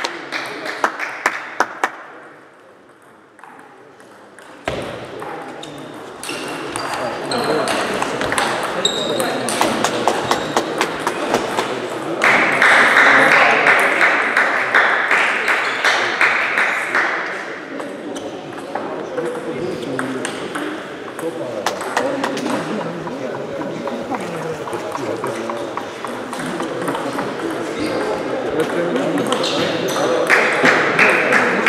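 Celluloid-plastic table tennis ball being struck back and forth in rallies: rapid sharp clicks off the rubber-covered bats and the table top, echoing in the hall, with a short quieter lull a few seconds in. Voices chatter underneath.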